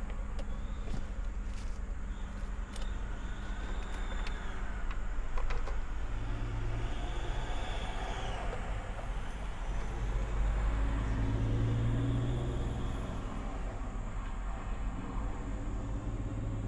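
Motor vehicles running outside the van: a low, steady engine and traffic rumble that swells twice, about six and ten seconds in. Light clicks and rustles of a plastic food container and a paper towel sit on top.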